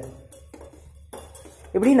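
A metal spoon stirring in a stainless-steel tumbler, with a few faint clinks against the side.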